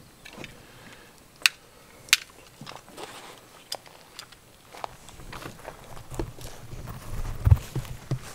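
A few sharp clicks, the loudest two about a second and a half and two seconds in, from gear being handled at an open hard pistol case. In the second half come footsteps through grass and the thumps and rumble of a carried camera.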